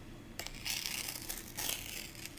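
Pokémon trading card's thick cardstock being torn in half by hand: a rough ripping that starts about half a second in and goes in several uneven pulls.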